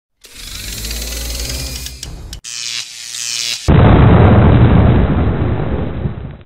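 Logo-intro sound effects: a swelling whoosh with rising tones, a short high sweep, then a sudden loud explosion-like boom with a deep rumble that fades away.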